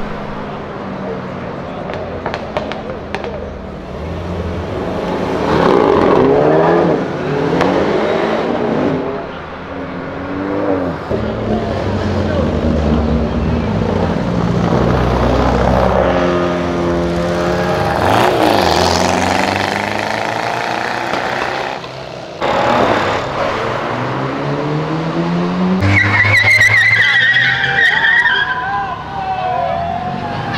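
Cars revving and accelerating away one after another, their engine notes climbing and falling in pitch, with crowd voices behind. Near the end, a high wavering tyre squeal.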